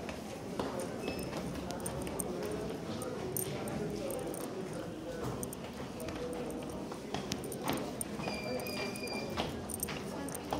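Footsteps knocking on hard stairs as someone climbs, over a background of people talking. A short electronic beep sounds about a second in, and a longer one near the end.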